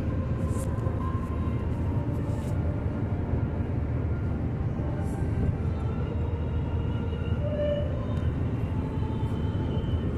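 Steady low rumble of tyre and engine noise heard inside a car cabin moving at highway speed, with a few brief hisses of passing air on top.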